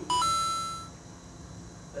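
Two-note electronic chime sound effect: a brief lower note stepping up to a higher ringing note that fades away in under a second.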